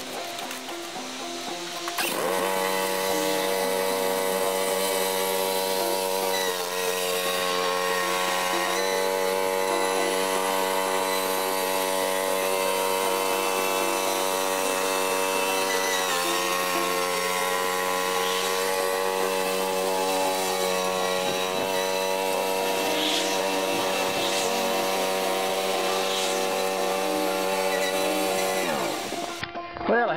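John Deere 165 lawn tractor engine running steadily at high throttle while pulling a loaded dump trailer up a slope. It grows louder about two seconds in, and its pitch sags briefly twice under the load.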